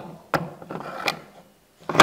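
Metal clicks and light scraping as the steel clutch drum of a Zetor's multipower reduction unit is slid down over the splined gearbox shaft, ending in a sharper metallic knock as it seats.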